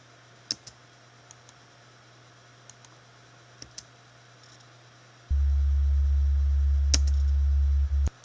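Steady sub-bass sine tone of about 70 Hz from REAPER's tone generator plugin, a deep hum that comes in suddenly about five seconds in and stops sharply near the end. Before it, a few faint clicks.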